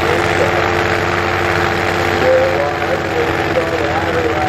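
Drag race car's engine idling steadily at the starting line, one even tone held throughout, with people's voices in the background.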